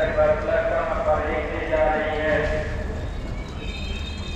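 Passenger train coach in motion: a steady low rumble and the clatter of wheels over the rails, with people's voices in the coach over it.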